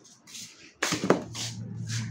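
Refrigerator door pulled open with a sharp click about a second in, followed by rustling and a steady low hum.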